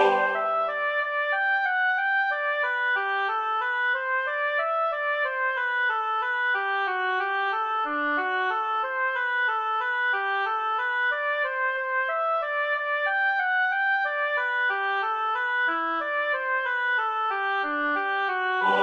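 Computer-rendered score playback of a single instrumental line playing a steady run of even notes, a little over two a second, as an interlude while the four choir parts rest.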